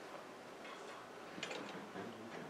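Faint room tone with a few light clicks, in a quick cluster about one and a half seconds in.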